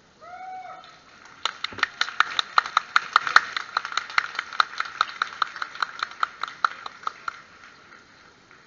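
A short rising cry, then a kecak chorus chanting 'cak' in unison: sharp, evenly spaced strokes about five a second for some six seconds.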